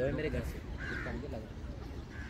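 People talking in the background, with a short bird call about a second in.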